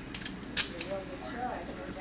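Several short, sharp mechanical clicks from the knob of a toy gumball machine being worked by a child's hand, the loudest a bit over half a second in.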